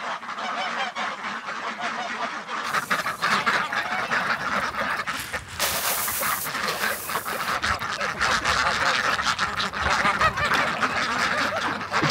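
A mixed flock of domestic geese, ducks and chickens calling all at once, the geese honking and the ducks quacking over one another in a continuous din, excited at feeding time. Twice, the second time about halfway through, a hiss of grain is heard, and the poured grain lands in a metal feed pan.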